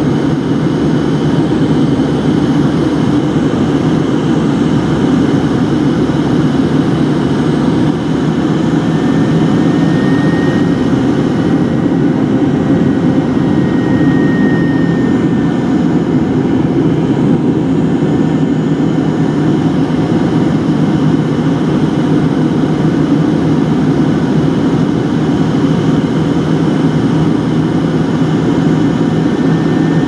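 Steady cabin drone of a Fokker 70 in flight: its rear-mounted Rolls-Royce Tay turbofans and the rush of air, heard from a window seat right beside the engine. A low hum runs unchanged throughout, with a faint high whine coming and going around the middle.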